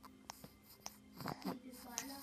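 A sleeping toddler sucking on a pacifier: soft mouth clicks about twice a second, with a brief whimpering sound falling in pitch a little over a second in.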